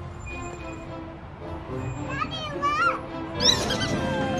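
Background music, with a small child's high-pitched voice calling out twice in the second half; the second call falls in pitch.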